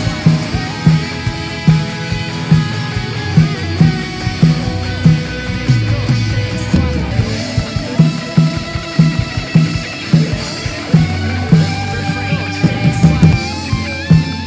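Live rock band playing: electric guitars, bass and a drum kit, with a steady kick-drum beat a little under once a second.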